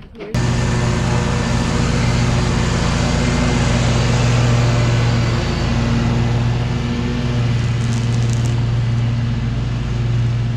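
An engine running steadily close by, a loud even hum that starts abruptly just after the start and holds without change.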